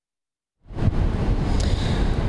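Dead silence for about half a second, then strong wind buffeting the microphone, a loud, fluttering rumble, over the rush of rough surf.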